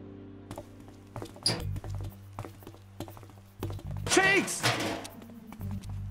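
Cartoon soundtrack: scattered soft clicks and knocks over a low, steady music bed. About four seconds in comes a short squeaky, voice-like sound that bends up and down in pitch.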